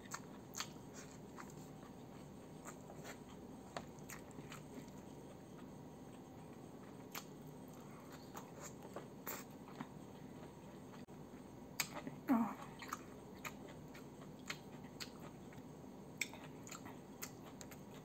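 Faint chewing of a mouthful of fried chicken and rice, with scattered soft wet mouth clicks over a low room hum. A short "oh" from the eater about twelve seconds in.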